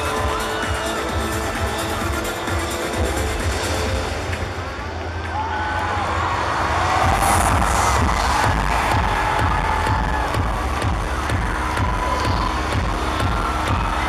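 Electronic intro music with a heavy bass beat playing over a stadium sound system. The music dips about four seconds in and comes back louder around seven seconds. A large crowd of fans screams and cheers over it throughout.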